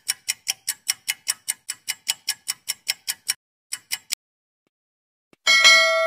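Countdown-timer sound effect: rapid, even clock ticks, about five a second, for over three seconds, then two last ticks and a pause. A bell-like chime rings near the end.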